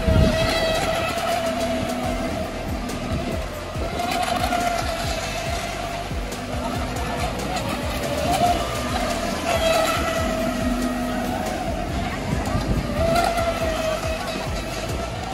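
Electric RC racing boats running at speed: a steady high-pitched motor whine that wavers slightly in pitch as the boats work around the buoys.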